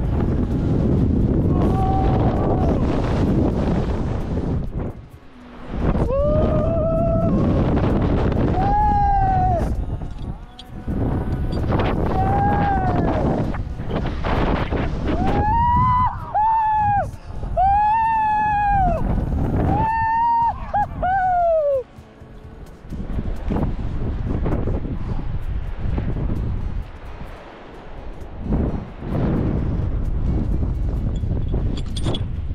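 Wind rushing hard over the microphone as a bungee jumper free-falls and bounces on the cord. Through the middle comes a string of drawn-out yells, each rising and then falling in pitch.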